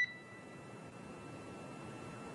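The tail of a short electronic beep on the radio communications loop at the end of a crew transmission, dying away at once. Then a faint, steady line hiss with a thin high tone.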